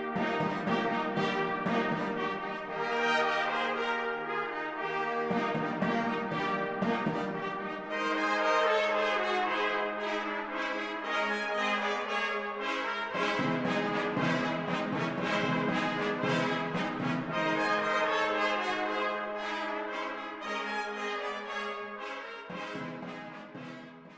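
An excerpt from an orchestral recording on period instruments, led by the brass: sustained brass chords and repeated fanfare-like figures. It fades out near the end.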